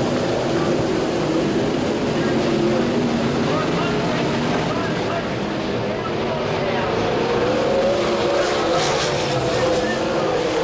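Winged sprintcars' V8 engines racing on a dirt oval. The pack's engine notes rise and fall in pitch as they power through the turns and down the straight.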